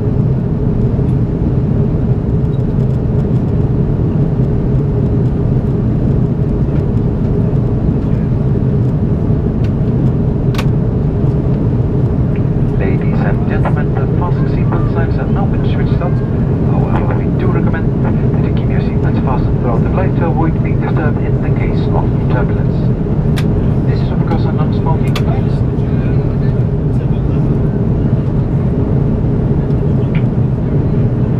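Steady cabin noise of an Airbus A330-343 in flight, its Rolls-Royce Trent 700 engines and the airflow heard from a window seat by the wing. A voice speaks over it from about a third of the way in until a little past two-thirds.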